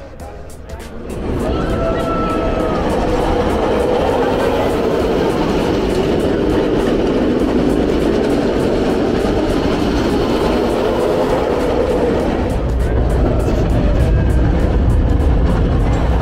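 A single-rail steel roller coaster train rushing along its track: a loud, continuous rumble that builds about a second in and is deepest over the last few seconds as the train passes closest. Riders are screaming over it.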